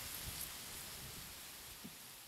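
A steady, faint hiss with a few light crackles, fading out slowly.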